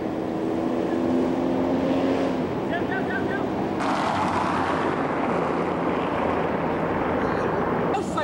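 Street traffic noise picked up by a camcorder microphone: a low engine hum for the first couple of seconds and a few words, then an abrupt cut about four seconds in to a louder, steady rushing noise.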